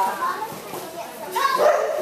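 A dog barking among people's voices calling out, with a short louder outburst about one and a half seconds in.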